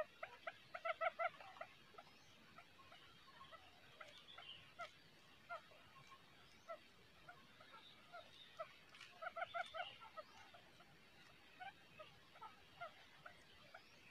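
Quail calling faintly: short, clucking notes in quick runs of four or five, about a second in and again about nine seconds in, with scattered single notes between.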